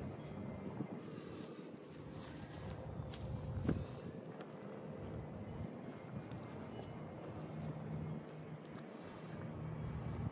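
Faint, steady low rumble in the background, with a single light knock just under four seconds in.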